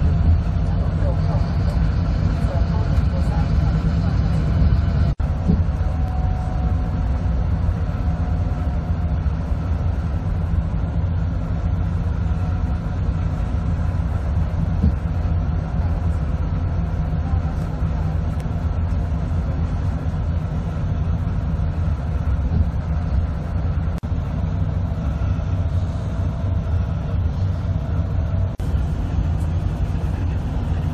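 Steady low engine and road noise of a tour bus heard from inside the cabin while it drives, with a brief click about five seconds in.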